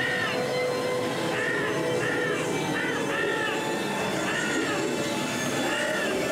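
Dark-ride show audio: a string of short cries, each rising then falling in pitch, roughly one a second and sometimes two close together, over a steady background hiss and hum.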